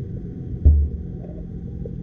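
Underwater noise picked up by a submerged camera: a steady low rumble with a faint thin steady tone above it, and one dull, low thump about two-thirds of a second in.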